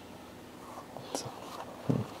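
Quiet handling of a silicone-coated welding glove as it is turned over and flexed in the hands: faint rustling with a single soft click about a second in. A man says one short word near the end.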